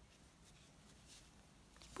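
Near silence: room tone, with a couple of faint soft rustles of T-shirt yarn being worked on a crochet hook.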